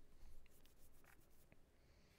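Near silence with a short run of faint clicks and scratchy rustles, a handful of small taps about half a second to a second and a half in.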